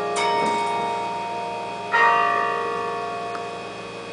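Carillon bells struck from the baton keyboard: two strokes, one just after the start and another about halfway through, each left to ring on and fade slowly with many overtones.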